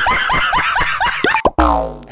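A man laughing hard in a rapid, high-pitched, bouncing run of 'ha-ha-ha' bursts, about six or seven a second, that cuts off abruptly about a second and a half in.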